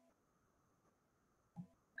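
Near silence: a pause in a man's lecture over an online call, with one faint brief sound shortly before the speech resumes.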